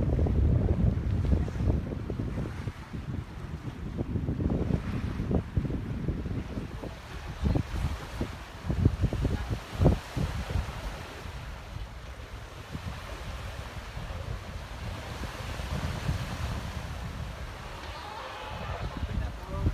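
Wind buffeting the microphone in gusts over the wash of water along the hull of a sailing schooner under way. The buffets are strongest in the first few seconds and again around eight to ten seconds in, then ease.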